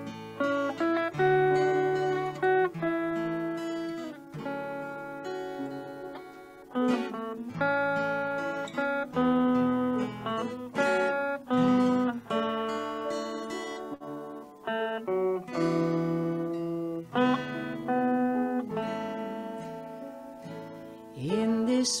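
Acoustic guitar playing an instrumental introduction, a series of strummed chords that each ring and fade. A singing voice comes in with a rising slide just before the end.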